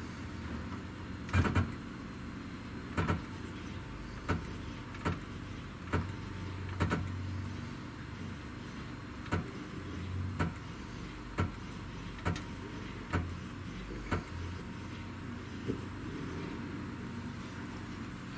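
Z-axis motor of a CNC-converted SIEG X2 mill jogging the head down in short steps, a brief motor burst about once a second, as the end mill is brought down to touch off on the top of the aluminium block and zero Z. A low steady hum runs underneath.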